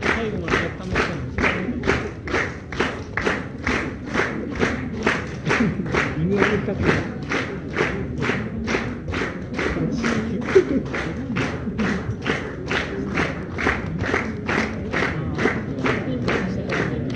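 Concert audience clapping in unison in a steady beat, about two and a half claps a second, calling for an encore, with crowd voices underneath.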